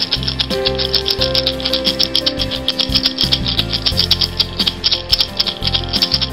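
A seed-filled gourd rattle shaken in a fast, even rhythm, over background music with long held notes and a bass line; the rattling stops right at the end.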